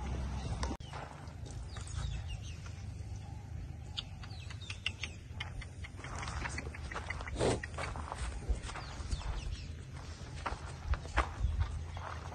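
Cattle hooves stepping on dry dirt: scattered scuffs and knocks, the loudest about seven and a half seconds in, over a steady low rumble.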